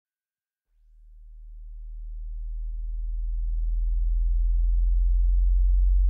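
A deep, low synthesized bass tone fading in from silence about a second in and swelling steadily louder, the droning swell that opens the song.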